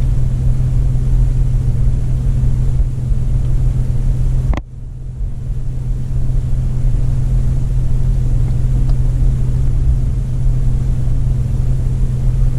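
A car engine idling, heard from inside the cabin as a steady low hum. A sharp click comes about four and a half seconds in, after which the hum briefly drops before returning.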